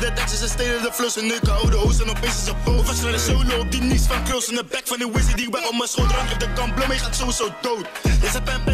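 Dutch drill track playing: a rapper's vocals over a beat whose deep 808 bass notes slide down in pitch. It starts abruptly as playback resumes.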